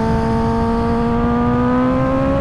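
Sport motorcycle engine pulling steadily under way, its pitch rising slowly as the bike gains speed, over rushing wind and road noise.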